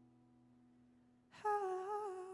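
Acoustic guitar notes dying away. About one and a half seconds in, a singer's voice comes in on a held, wavering wordless note.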